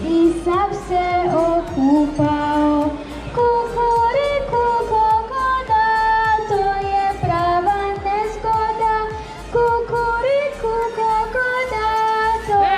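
Children singing a song in unison, with a musical backing and a steady beat.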